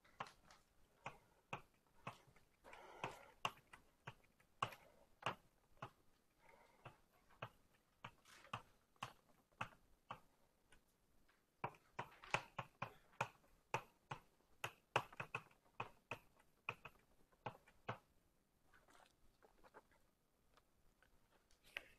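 Faint, irregular taps and clicks of writing on a board, a few a second with short gaps, with a brief scratchy stroke about three seconds in.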